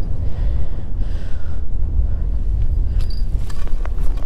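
Strong wind buffeting the microphone: a steady, loud low rumble, with a few faint ticks near the end.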